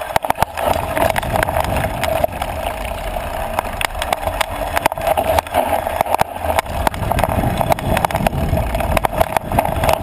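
Onboard sound of an off-road bike riding a rough dirt trail: a steady rushing noise and low rumble, with frequent rapid clicks and rattles as the bike and its knobby tyres hit bumps.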